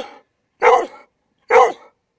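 A 12-year-old Hungarian vizsla barking: the end of one bark right at the start, then two short barks about a second apart. The owner takes the barking for happiness.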